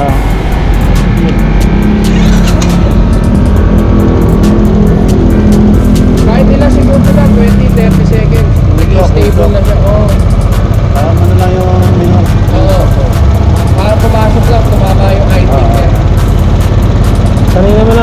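Royal Enfield Classic's air-cooled single-cylinder engine idling steadily while cold, on choke. Background music with singing plays over it.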